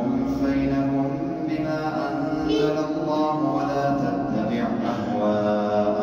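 A man's voice reciting the Quran aloud in a melodic, chanted style, holding long notes that rise and fall in pitch.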